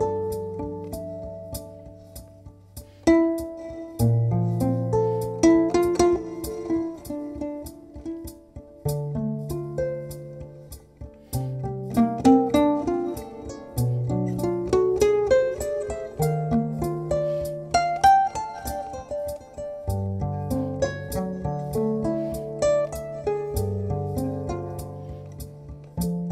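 Domra played with a plectrum, layered through a loop processor: quick runs of plucked notes over low notes that are each held for a few seconds before shifting to the next.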